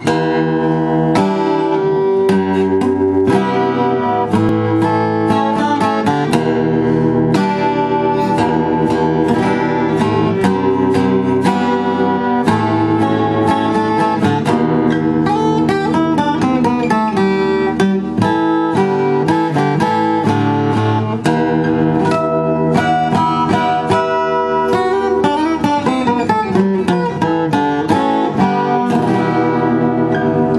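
Twelve-string acoustic guitar played unplugged: a continuous run of picked notes and chords at an even level.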